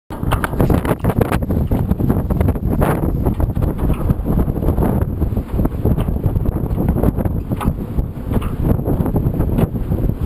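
Strong offshore wind buffeting the microphone on an anchored sailboat's deck: a loud, continuous, low rumble that surges and dips with the gusts.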